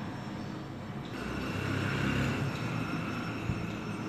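Faint steady background rumble with a thin hum, swelling a little about a second in and easing off after about two seconds.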